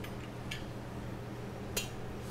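A few light clicks and clinks of kitchen utensils against a stainless steel mixing bowl, one about half a second in and a sharper one near the end, over a steady low hum.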